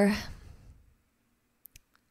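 A woman's speaking voice trailing off in the first half-second, then quiet with two faint, short clicks close together about a second and a half in.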